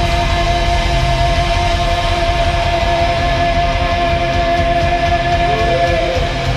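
Heavy metal band playing live through a club PA: electric guitars and drums, with one long high note held, and a new note sliding in near the end.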